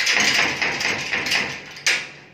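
Padlock rattling and clanking against the steel bars of a cell door as it is shaken and worked by hand, with a run of sharp metal knocks, the loudest near the end.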